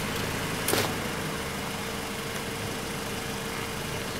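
A car engine idling steadily, with one sharp click just under a second in.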